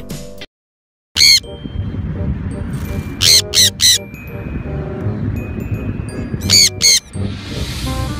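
Sun conures giving loud, shrill screeches over a steady low background noise. There is one call about a second in, a quick run of three around the middle, and two more near the end.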